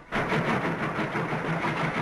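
Cartoon sound effect of a train running: a loud, even rush of noise with a rhythmic low pulse, which starts suddenly and cuts off abruptly.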